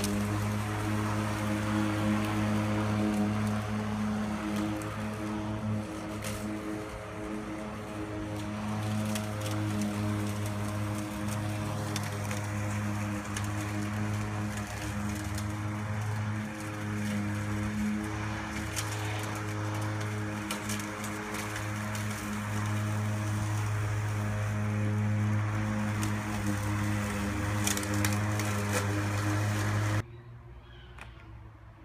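Worx WG771 56-volt cordless electric lawn mower running as it is pushed through grass: a steady low hum with a whir of the blade and grass noise, easing off briefly a few times.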